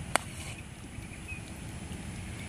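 A golf iron striking a ball off grass: one sharp click just after the start of a full swing, over steady outdoor background noise.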